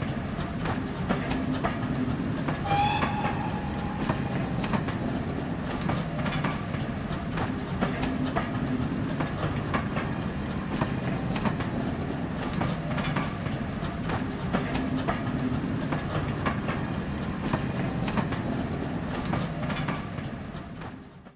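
Full-size passenger train passing close by, its coaches' wheels clattering steadily over the rail joints. A short whistle sounds about three seconds in.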